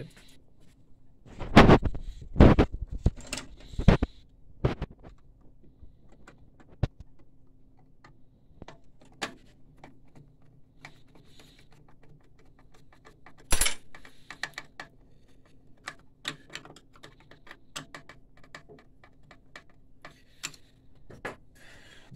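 Metal clicks, clinks and knocks of a screwdriver and screw working in a printer's sheet-steel chassis: a cluster of loud knocks about two seconds in, another loud one just past the middle, and lighter ticking in between.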